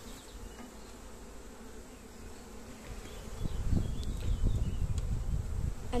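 Honeybees buzzing in a steady hum around an open hive. About halfway through, a louder low buffeting rumble on the microphone comes in over the buzzing.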